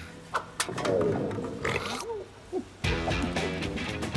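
A cartoon Rabbid's wordless cries, short rising and falling yelps, over background music, with a couple of sharp knocks about half a second in and a louder hit near the end.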